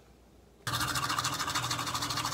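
A toothbrush scrubbing teeth in rapid, even back-and-forth strokes, starting suddenly just under a second in after a brief near silence.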